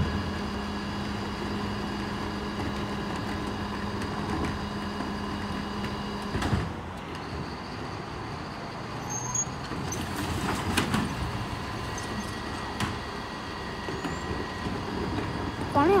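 Mercedes-Benz Econic bin lorry running while stationary. A steady hum stops with a thump about six and a half seconds in, then the engine runs on with scattered knocks and rattles as wheelie bins are wheeled to its rear lifts.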